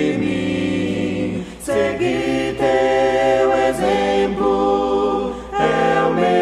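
Choir singing a slow Portuguese worship hymn in harmony, with long held notes and short breaks between phrases about a second and a half in and near the end.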